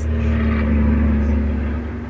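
A loud truck passing by: a steady deep engine sound with a low hum that fades away near the end.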